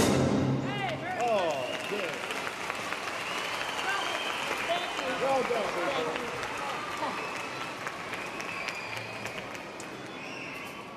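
Concert-hall audience applauding and cheering, with many voices calling out over the clapping, just as the orchestra's last chord dies away. The applause slowly fades.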